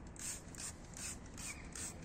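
Hand trigger sprayer being pumped over and over, a short hiss of liquid cleaner with each squeeze, about two to three squirts a second.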